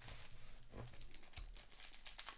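Faint, irregular crinkling of a foil trading-card pack wrapper as it is handled and starts to be torn open.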